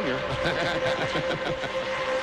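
Race cars' V8 engines running flat out in a pack, a steady high drone carried on the broadcast sound under the commentators' voices.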